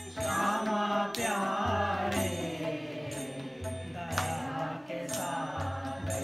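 Devotional chanting sung to instrumental accompaniment: a voice sliding between notes over a low, repeating pulse, with sharp percussive strikes about a second in and twice more near the end.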